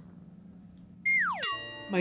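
After a quiet second, a short comic sound effect: a tone sliding quickly down in pitch, then a ringing chord of several steady notes that fades out.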